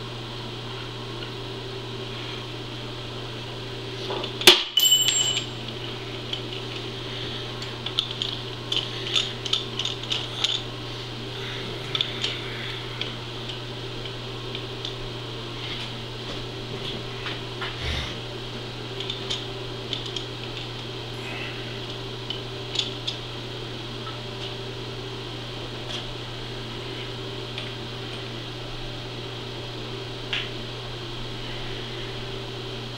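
Metal tools and parts being handled: one sharp metallic clang that rings on briefly about four and a half seconds in, then a scatter of light clicks and knocks. A steady low hum runs underneath throughout.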